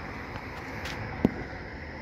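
Steady outdoor background noise with one short, sharp click just past a second in.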